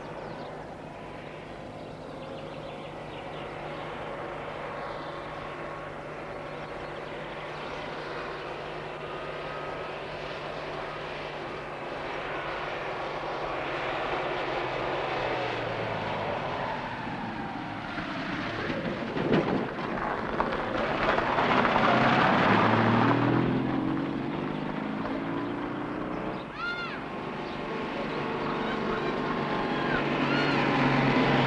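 Citroën 2CV's air-cooled flat-twin engine running as the car drives past, growing louder, loudest a little past the middle with its pitch falling as it goes by, then building again near the end.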